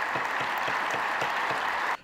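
A large audience applauding: many hands clapping in a steady, dense sound that cuts off suddenly at the end.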